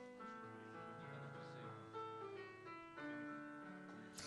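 Ketron Audya 5 arranger keyboard playing a quiet introduction in a piano-like sound: a few held chords that change roughly every second or so.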